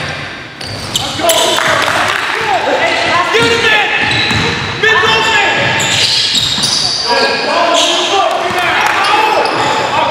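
Game sound in a gym: rubber sneaker soles squeaking on the hardwood court in short, bending chirps, a basketball bouncing, and indistinct players' voices, all echoing in the hall.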